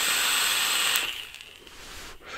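A long draw on a box-mod vape: air hissing through the atomizer with a fine crackle as the coil fires, fading out about a second in. A softer breath follows near the end as the vapour is exhaled.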